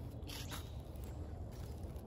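Handling and movement noise from a handheld phone while its holder moves along a garden bed: a steady low rumble, with a brief rustling scuff about half a second in.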